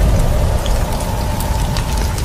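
Cinematic title-card sound effect: a deep steady rumble with scattered sharp crackles, like sparks or embers, and a faint held tone.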